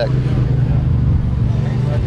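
An engine running steadily, giving a low, even hum.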